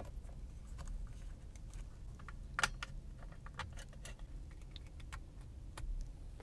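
Faint plastic clicks and taps as a clip-on phone holder is fitted to a steering wheel and a phone with a plug-in USB fan is set into it, with the loudest click about two and a half seconds in. A low steady hum runs underneath.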